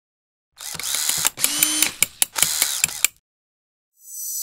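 Sound effect of mechanical ratcheting and clicking in three or four quick bursts with sharp clicks between them, starting about half a second in and stopping about three seconds in.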